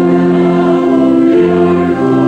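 Congregation singing a hymn to pipe-organ-style accompaniment, the chords held and moving to new notes about a second in.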